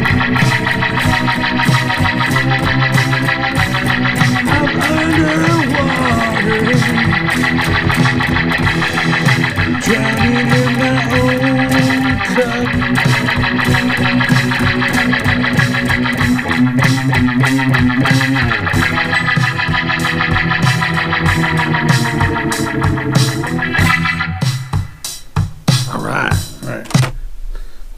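Custom Charvel So-Cal electric guitar played through an Avid Eleven Rack effects preset with a spacey, 'outer space' sound, over a programmed drum backing track. The playing breaks off near the end.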